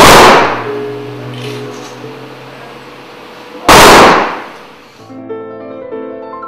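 Two loud rifle volleys of a memorial firing-party salute, about four seconds apart, each trailing off in an echo, over slow, soft music in which piano notes come forward near the end.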